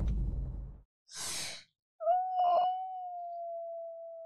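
A woman's sharp sighing exhale, then a long, high-pitched whining hum held steady for over two seconds, loudest at its onset.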